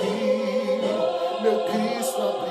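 A man singing a slow Portuguese gospel song, holding notes with a wide vibrato, over choir-like backing voices.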